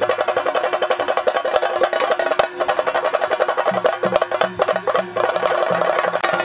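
Fast drumming with sticks, many strokes a second, over a steady held tone; a deeper pulsing beat joins a little after halfway.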